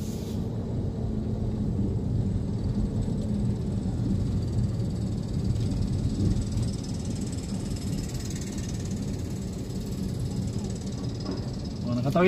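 Steady engine rumble and road noise of a vehicle driving along a city street.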